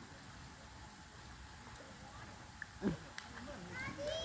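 Faint outdoor background with no clear source, broken by one brief vocal sound a little under three seconds in.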